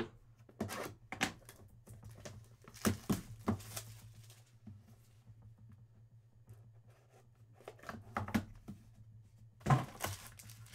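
Plastic shrink wrap being torn off a sealed trading-card hobby box, then the cardboard box handled and its lid slid off, in scattered short crinkles and light knocks. The loudest knock comes just before the end.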